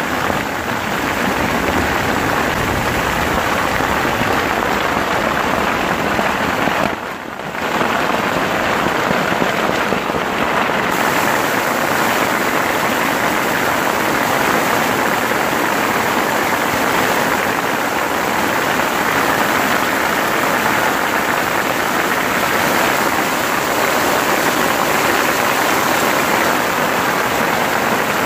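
Large hailstones falling hard on leaf litter, soil and trees: a dense, steady hiss and patter. The sound dips briefly about seven seconds in.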